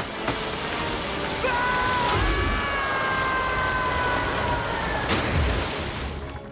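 Cartoon action sound effects: a steady rushing hiss, with a held whine over it from about a second and a half in that sags slightly in pitch, and a sharp hit near the end.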